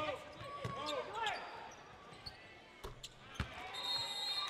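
A basketball bouncing on a hardwood gym floor, with three sharp bounces in the second half. A voice is heard in the first second.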